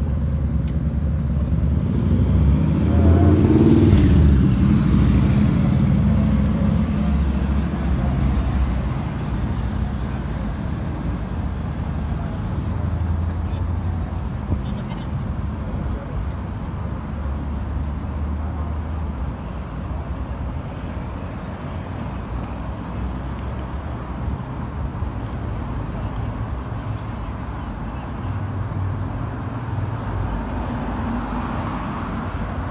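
Road traffic on a city street: a steady low rumble of passing cars, with one vehicle going by louder and closer from about two to six seconds in.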